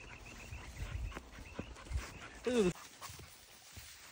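A hunting dog searching through tall grass gives one short, falling whine about two and a half seconds in. Before it there is a low rumble.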